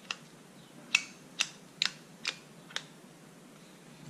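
Aluminium rotating handlebar camera mount clicking through its detent steps as the action camera is turned by hand: six sharp clicks about half a second apart. The fixed steps keep the camera from being set to point straight ahead.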